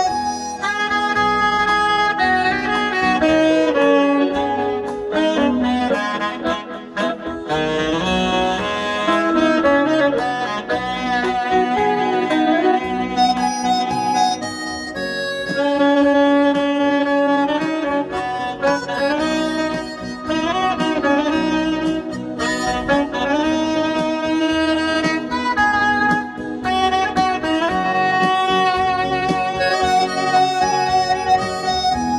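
Saxophone playing a melody of long held notes over a keyboard-led backing accompaniment.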